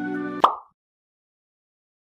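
Gentle background music with sustained notes, broken about half a second in by a short cartoon plop sound effect with a quick upward pitch sweep, after which all sound cuts off suddenly.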